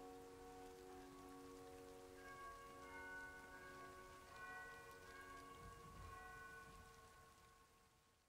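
Soft solo piano, very quiet: held notes ringing on, a few higher notes coming in about two seconds in, all fading away near the end, over a faint hiss.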